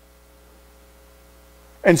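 Low, steady electrical hum in a pause between words, with a man's voice starting again near the end.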